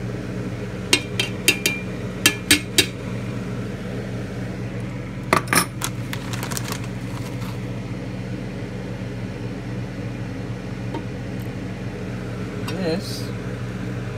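Sharp metal-on-metal clinks and knocks as a freshly cast lead disc is worked out of its small metal cup mold against a stainless steel pan. There are a quick run of light clinks, then a louder double knock a few seconds later, then a few faint ticks, over a steady low hum.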